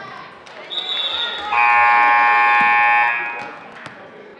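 Gym scoreboard buzzer sounding one steady electronic blare of about a second and a half, the loudest sound here. There is a basketball bounce on the floor near the end, with voices in the hall around it.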